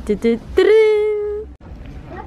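A young person's voice: a few quick pitched syllables, then one long held high note lasting about a second that stops suddenly.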